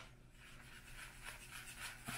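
Faint, soft rubbing of a nail-art detail brush being wiped clean in gloved fingers.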